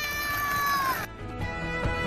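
A child's long high-pitched squeal, held for about a second and dipping at the end, followed by background music with held notes.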